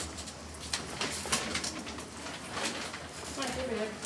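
Footsteps and pushchair wheels knocking over a lift's metal door sill as people step in and out, with a string of short clicks over a low steady hum and voices in the background.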